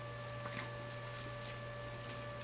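Faint steady electrical hum with a few thin, high steady tones over it, and one faint tick about half a second in.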